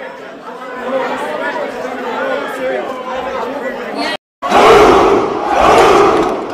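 Fight crowd in a hall, many voices talking and shouting over one another; it cuts out briefly about four seconds in, then comes back louder with massed shouting and cheering.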